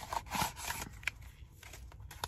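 Light rustling and clicking of a rapid antigen test kit's packaging being handled, a foil pouch and a cardboard box. Brief scrapes come in the first second, with a sharp click near the middle.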